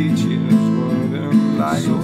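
Acoustic guitar strumming chords, with a stroke a little under a second apart.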